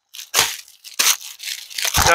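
Plastic packaging on garments crinkling in a few short, scratchy bursts as the clothes are handled.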